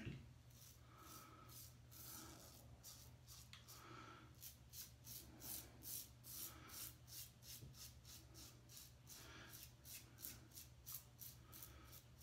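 Above The Tie M1 safety razor scraping through lather and stubble on the cheek. It is a faint run of short, quick strokes, several a second, coming thicker from about a third of the way in.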